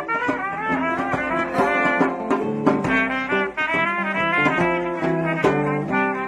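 Instrumental band music from a jam: a lead melody line over sustained bass notes, with regular drum hits.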